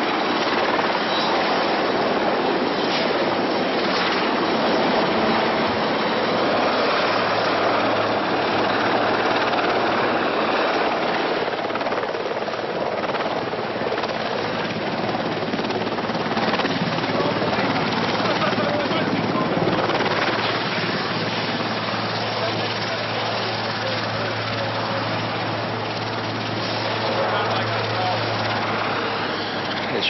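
Sikorsky VH-3 presidential helicopter setting down, its rotor and twin turbine engines making a steady, loud rush, with a low hum joining in partway through.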